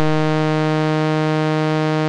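A loud, steady buzzing tone held at one low pitch with many overtones, completely unchanging, in place of the preacher's voice: an audio glitch in the live-stream sound.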